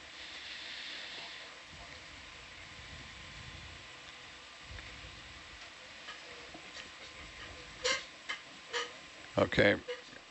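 Steady low background hiss, with a brief louder swell of hiss in the first second or so and a few short clicks around eight seconds in; a man's voice starts near the end.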